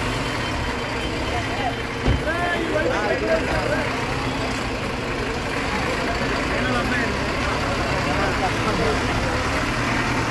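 A bus engine running steadily close by, under the talk of a crowd, with a single knock about two seconds in.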